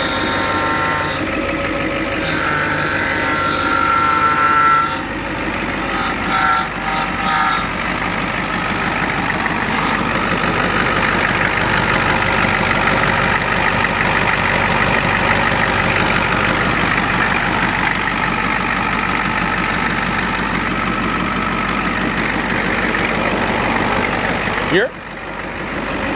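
Engine of a Ford E-350 bus running steadily with a moaning note, which the owner thinks may come from a front wheel sitting in a deep hole and loading the drivetrain.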